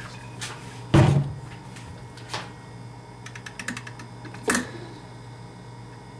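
A heavy thump about a second in, then a few sharp clicks and a quick run of light taps, like household objects being knocked and handled, over a steady low electrical hum.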